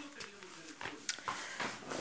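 Handling noise: a pair of gloves and clothing rustling, with a few light knocks close to the phone's microphone.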